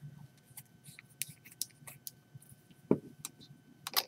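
Faint clicks and taps of brushes and paint pots being handled on a craft table, with one louder, duller knock about three seconds in.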